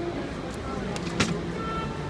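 Busy city street noise with traffic and the murmur of people around. About a second in, a single sharp click stands out.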